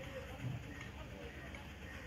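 Quiet room tone: a low steady background noise with faint, indistinct voices in the distance.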